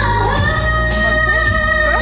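A woman's voice singing a pop song over amplified band accompaniment, with long sustained notes.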